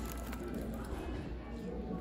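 Faint rustling and handling of a paper bag and a cardboard takeout box over a low room hum.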